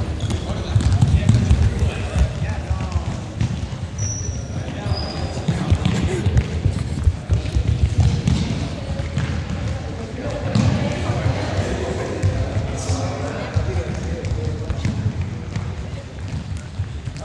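Many people running on a sports hall floor: a steady clatter of thudding footsteps and bouncing balls, with shouts and chatter and a couple of short shoe squeaks, all echoing in the large hall.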